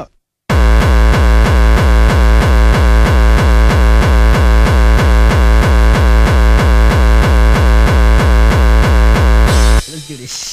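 Heavily distorted hardcore (gabber) kick drum playing a fast, steady beat, each hit with a falling pitch. It comes in about half a second in after a moment of silence and drops out just before the end.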